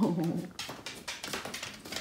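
A golden retriever giving a short, wavering whine about the first half second, begging for food held just out of reach. Faint clicks of handling follow.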